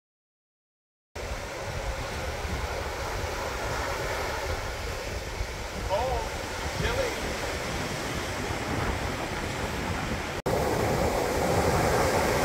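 Ocean surf washing onto a sandy beach, a steady rush of waves, starting after about a second of silence. It gets louder at a cut near the end, and two short pitched sounds stand out around the middle.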